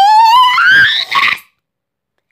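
A young person's voice holding one long note that climbs steadily in pitch into a high squeal, turns breathy and cuts off sharply about a second and a half in.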